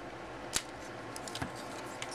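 Small plastic parts of a Transformers Human Alliance Sideswipe toy being unclipped by hand: one sharp click about half a second in, then a few lighter ticks.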